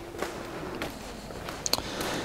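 Footsteps of a man walking across a showroom floor of interlocking plastic tiles: several light, separate steps.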